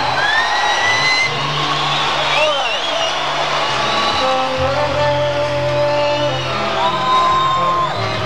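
Live rock band in an instrumental passage, captured from the audience in a large hall: lead guitar playing bending and held notes, ending in a long sustained note near the end, over a steady bass line, with whoops from the crowd.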